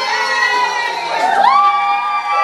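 A group of children cheering and screaming together, several high voices held in long shrieks, one rising sharply about one and a half seconds in.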